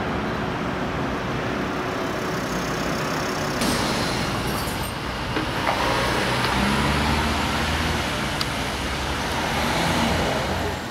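Road traffic noise: a steady wash of passing vehicles, with a heavier low engine rumble as a vehicle goes by about six to nine seconds in.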